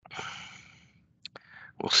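A person sighs: a long breathy exhale that fades out over about a second. Speech starts near the end.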